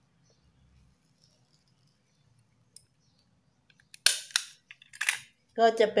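A small handheld stapler clicking shut through folded paper, fastening the paper petals: two loud sharp clicks about a second apart near the end.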